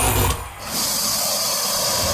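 A DJ's electronic noise effect in a live party mix: the bass drops out, and about half a second in a loud, steady, high-pitched hiss takes over.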